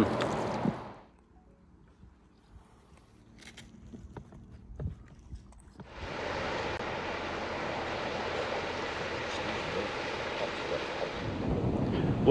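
Wind rushing over the microphone. It drops away after about a second to a quiet stretch with a few faint knocks, then comes back as a steady rush from about halfway through.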